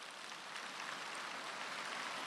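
A large audience applauding, the clapping swelling up over the first moments and then holding steady.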